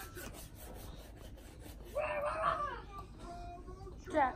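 A young child's voice: one short, high-pitched vocal sound about two seconds in, with its pitch rising and then falling, after a quieter stretch with faint rustling.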